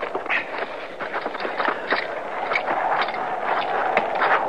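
Radio-drama sound effects: irregular squelching footsteps slogging through mud, over a steady hiss of rain.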